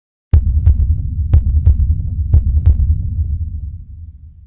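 Deep heartbeat sound effect in a logo intro: paired low thuds, lub-dub, about once a second over a low rumble. It starts suddenly and fades away toward the end.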